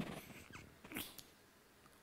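A pause between words, close to near silence, with a couple of faint short breaths at a headset microphone about half a second and a second in.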